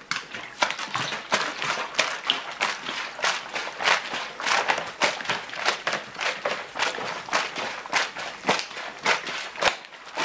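Apple must sloshing in a capped 5-litre plastic bottle as it is shaken by hand, in quick repeated strokes about two or three a second. The shaking mixes in the yeast nutrient and citric acid just added to the must.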